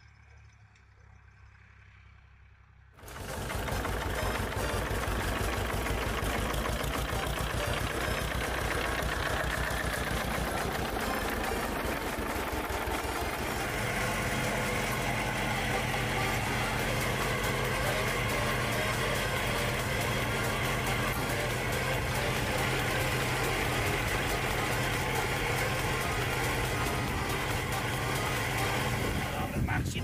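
A farm tractor's diesel engine running steadily. The sound cuts in suddenly about three seconds in and stays loud throughout.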